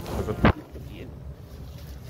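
Phone jostled by a calf pushing its head against it: one loud knock on the microphone about half a second in, then low rumbling handling noise.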